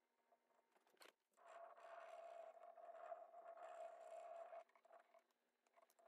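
Faint rubbing of a stick over the plastic backing sheet of a rub-on flower transfer, burnishing it onto painted wood. After a click about a second in, the rubbing runs steadily for about three seconds and then stops.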